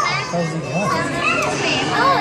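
Young children's voices: high calls and babble that rise and fall in pitch, with no clear words.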